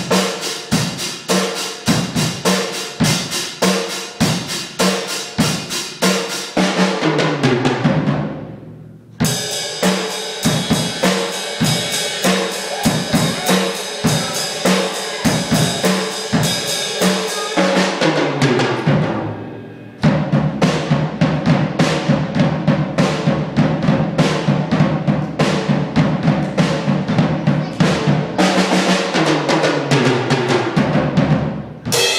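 A Premier acoustic drum kit played in a solo: steady strikes on bass drum, snare and toms in three runs, each of the first two letting the kit ring away for a second or two before the next run starts. The middle run carries a sustained cymbal wash over the beats.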